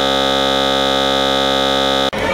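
Basketball scoreboard buzzer sounding one loud, steady, harsh tone held through the whole stretch.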